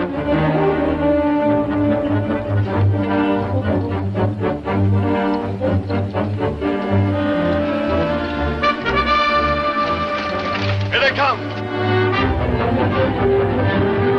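Orchestral film score with prominent brass and trombone, playing steadily throughout.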